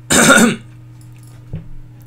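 A man clears his throat once, a loud rasp lasting about half a second.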